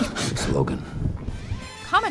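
Film fight-scene sound: a cluster of sharp smacks at the start with a man's short grunt, then scuffling noise under the score, and a man's voice rising right at the end.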